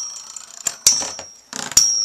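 Two metal Beyblade tops spinning in a plastic stadium and clashing: several sharp clinks, the loudest just under a second in and again near the end, each leaving a brief high metallic ring.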